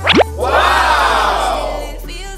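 A quick rising whoosh sound effect, then a crowd of voices in one long exclamation that swells and falls away, over background music.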